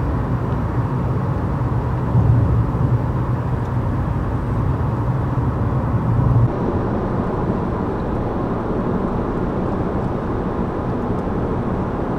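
Steady road and tyre rumble inside a Honda Civic's cabin at highway speed, about 60 mph. About halfway through, the deep low rumble eases and the sound turns slightly thinner.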